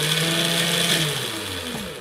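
Small electric drive motor on a bench robot running under its speed controller, a steady hum with hiss whose pitch drops near the end. It is in autonomous mode, its speed set by a Sharp infrared distance sensor reading the position of a hand.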